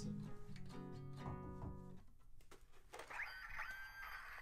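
Acoustic guitar being played, several notes ringing together, stopping about halfway through. A few sharp clicks follow, then a higher tone that bends up in pitch near the end.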